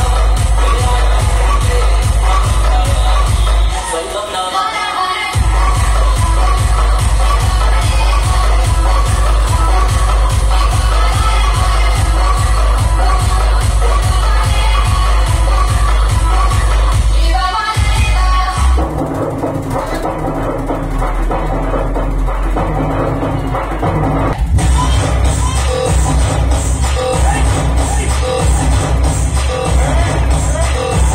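Loud DJ dance music with a heavy, even bass beat, played through a street sound system of one bass and two top speakers. The bass drops out briefly about four seconds in. A little after halfway the music changes, its treble cut away for several seconds before the full sound comes back.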